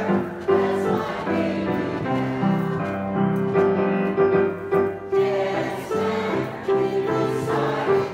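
A mixed choir of men and women singing in unison, accompanied by a grand piano.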